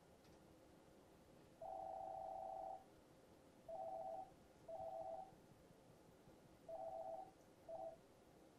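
Faint electronic telephone tone of two close notes sounding together, in beeps: one long beep of about a second, then four shorter beeps at uneven gaps, over a quiet room.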